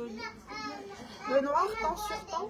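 People's voices talking with no clear words, louder about halfway through.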